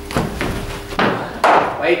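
A cricket ball being bowled and played in indoor nets: a few sharp knocks and thuds as the bowler lands, the ball pitches and the batter meets it with the bat. The loudest knock comes about a second and a half in.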